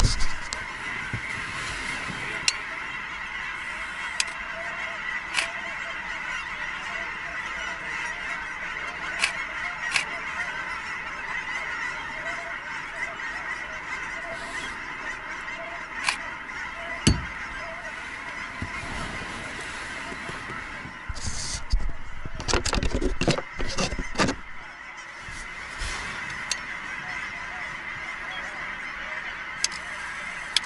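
A large flock of geese calling, a dense, continuous honking chorus. Scattered single sharp clicks run through it, with a louder cluster of knocks and handling noise about three quarters of the way through.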